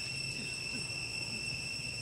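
Insects droning with a steady, unbroken high-pitched whine.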